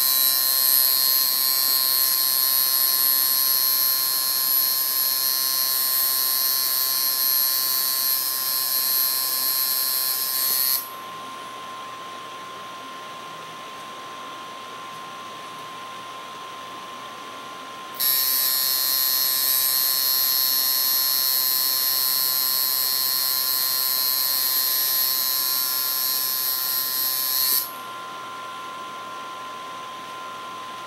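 Coil tattoo machine running with a steady high buzz while lining a stencil outline on skin. It stops about eleven seconds in, starts again about seven seconds later, and stops once more shortly before the end.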